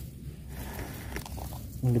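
Quiet outdoor background with a low steady rumble and a few faint light clicks or rustles about a second in; a man starts speaking right at the end.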